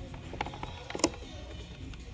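A few light clicks and taps from a boxed diecast model car being handled, the loudest about a second in, over faint background music.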